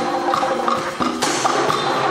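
Concert wind band playing a mambo: held wind and brass chords that change to a new, brighter chord about a second in, over Latin percussion. Hand-struck conga drums play along with a steady clicking beat of about four strokes a second.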